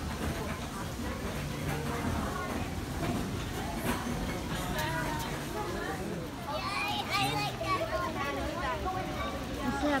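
Chatter of many people's voices, children's among them, with nearer voices standing out more clearly over the last few seconds.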